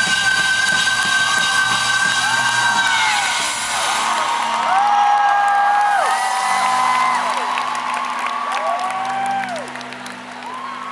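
Live rock band reaching the end of a song: a high note is held for the first few seconds over a sustained chord. From about the middle on, the crowd whoops and cheers over the ringing-out music, which fades near the end.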